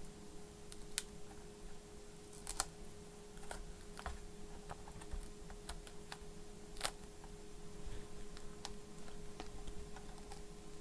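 Scattered light clicks and taps from fingers handling parts inside an opened laptop, with sharper clicks about one, two and a half and seven seconds in. A faint steady hum runs underneath.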